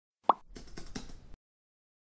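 An intro sound effect: a single short pop about a quarter second in, followed by about a second of faint clicks over a low hiss.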